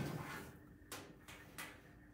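A few soft clicks and knocks from a small paint roller and its handle working against the metal file cabinet's open drawer.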